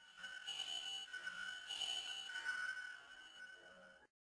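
Faint sustained electronic tones from the song's backing, a couple of steady high notes that swell and ebb a few times before cutting off suddenly at the end.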